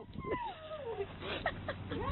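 A quiet, high whining cry that glides down in pitch over about a second, followed by a few shorter cries.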